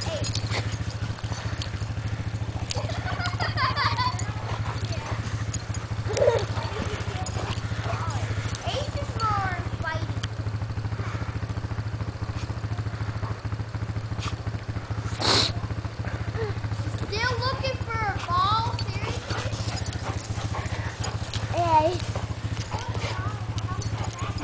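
German Shepherds play-fighting, giving short high whines and yelps now and then over a steady low hum, with one sharp noisy burst about halfway through.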